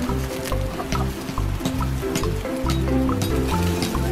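Background music: held bass and melody notes with light percussion.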